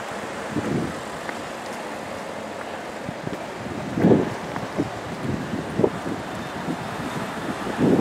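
Street ambience: wind buffeting the microphone over a steady background of traffic, with a few brief low gusts, the strongest about four seconds in.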